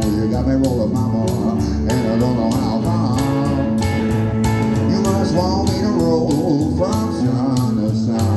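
Live blues from an archtop electric guitar and a plucked upright double bass, playing a steady, even rhythm.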